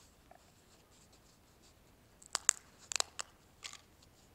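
Priest breaking the large communion host, a thin unleavened wafer, by hand over the chalice: quiet at first, then a quick run of sharp, crisp cracks starting about halfway through.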